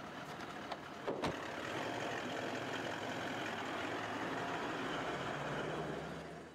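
An SUV's door knocks shut about a second in, after a few light clicks, then the vehicle's engine runs steadily at idle.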